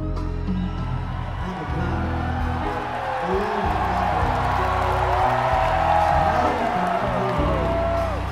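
Live rock band playing in an arena while the crowd cheers and whistles over it. The cheering and whistling swell through the middle and the band keeps holding its notes underneath, as heard on an audience tape.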